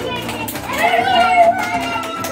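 Children's voices calling out and chattering together, with one loud drawn-out shout about a second in that rises and then falls.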